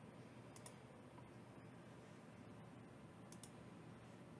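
Near silence broken by two faint computer mouse clicks, each a quick press-and-release pair: one about half a second in, the other a little after three seconds.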